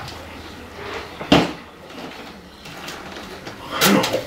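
A large plastic fountain-drink cup set down on a table with a single sharp knock about a second in, and another short knock near the end.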